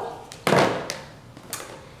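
A cardboard gift box being handled: one sharp knock about half a second in, then a couple of faint light taps.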